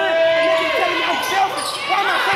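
Sounds of a basketball game on a hardwood gym floor: the ball bouncing and players' voices, with one long steady pitched sound held through about the first second.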